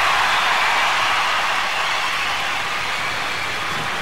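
Large concert audience applauding, a dense, even wash of clapping that eases slightly as the seconds pass.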